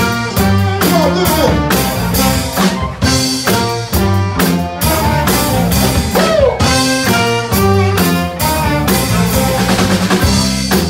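Live soul band playing: a horn section of trumpet and saxophone over drum kit, electric bass and guitar, in short repeated chords on a steady beat.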